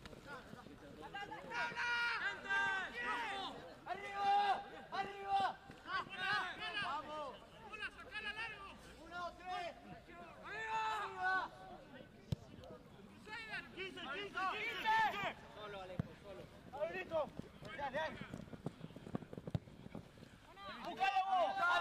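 Several high-pitched voices shout and call out in quick succession during rugby play, with no clear words among them.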